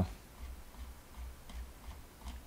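Faint clicking of a computer mouse scroll wheel as it is turned to scroll down, over a low steady hum.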